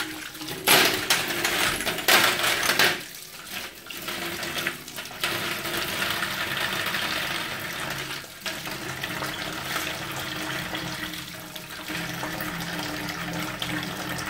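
Kitchen tap running into a stainless steel sink, splashing over hands and brass cartridge cases as the cases are rinsed. The splashing is loudest between about one and three seconds in, then settles to a steady flow.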